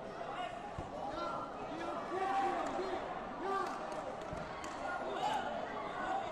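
Echoing sports hall ambience: many voices calling and talking across the hall, with two dull thumps, one about a second in and one about four seconds later.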